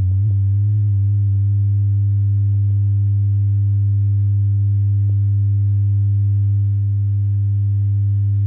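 Steady low-pitched line-up tone, a reference tone recorded with colour bars at the head of a broadcast videotape to set audio levels. Its pitch wavers briefly at the start, then holds even.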